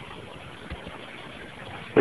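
Steady hiss of background room noise with no distinct event.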